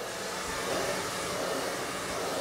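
Handheld hair dryer running steadily, blowing air onto hair.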